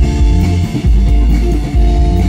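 Live rock band playing: electric guitar and drum kit with a heavy low end, loud and unbroken.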